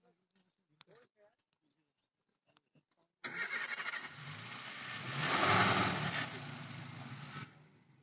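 A safari jeep's engine starting suddenly about three seconds in, revving up, then dropping to a steady idle near the end.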